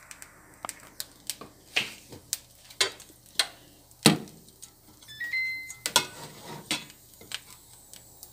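Irregular sharp clicks and taps around a nonstick frying pan of cold cooked rice on an induction cooktop, the loudest about halfway through. A brief high stepped electronic tone sounds a little past the middle.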